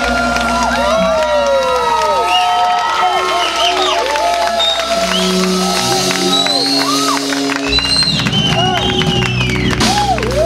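Live band holding a vamp of sustained chords while the audience cheers and whoops. The bass and drums drop out briefly and come back in about eight seconds in.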